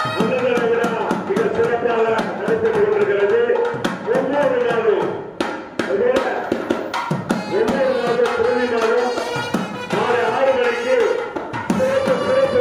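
Indian devotional music: a sustained, wavering melody line over frequent hand-drum strokes.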